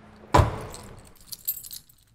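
A car door shuts with a single loud thump, followed by keys jangling and clinking.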